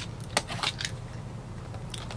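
Plastic shrink wrap on a cardboard trading-card blaster box crinkling and clicking under the fingers as it is worked open: one sharp click about a third of a second in, a few quicker clicks just after, then faint rustling.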